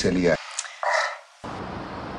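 A spoken phrase ends, a short gap follows with one brief faint sound, then steady outdoor background noise.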